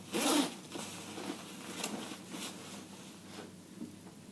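Zipper of a nylon jacket being pulled open: one loud zip right at the start, then several shorter, fainter scrapes and rustles of the fabric.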